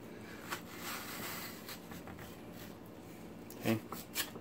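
Metal melon slicer blades cutting and scraping through watermelon flesh, heard as faint wet rubbing with a few soft clicks, and a brief louder sound near the end.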